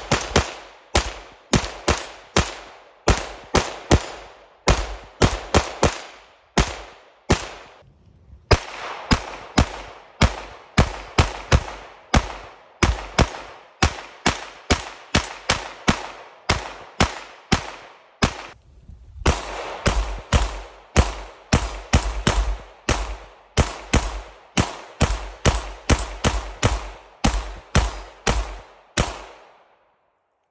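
PSA 5.7 Rock pistol in 5.7×28mm with an Eden Perfection muzzle compensator, fired in fast strings of shots, about two to three a second. There are short breaks about 8 s in and about 18 s in, and the shooting stops just before the end.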